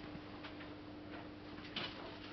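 A few faint, scattered clicks and ticks over a steady low hum.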